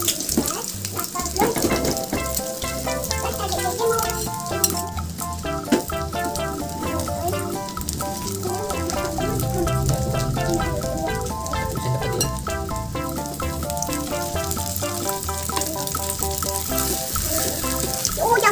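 Instant-noodle and egg omelette sizzling in hot oil in a frying pan, under background music with a stepping melody. A couple of sharp clicks sound around five and six seconds in.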